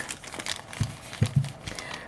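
Soft rustling of plastic packaging and a few light knocks as a soldering iron and its cable are handled and set down on a table.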